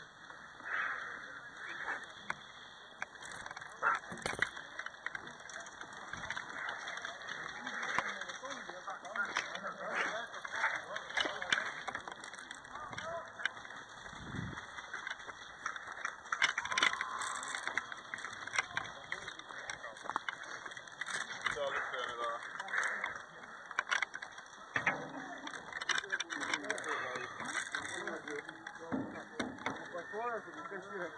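Indistinct voices of players in the distance, mixed with scattered sharp clicks and knocks and a constant rustle from movement around the camera.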